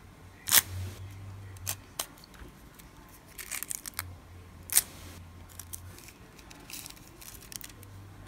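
Small clicks and crinkles of handling a piece of holographic nail transfer foil and a nail tool over the nails, with a sharp click about half a second in and another near the middle. A faint low hum comes and goes underneath.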